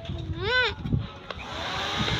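A goat bleats once, a short call rising and falling in pitch, about half a second in. From about a second and a half, a steady hiss sets in and holds.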